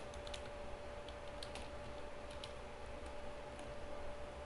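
Faint keystrokes on a computer keyboard, typed at an irregular pace, over a steady faint hum.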